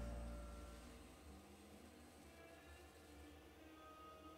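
The karaoke backing track's final low note fades out over about the first second, leaving near silence with faint room tone.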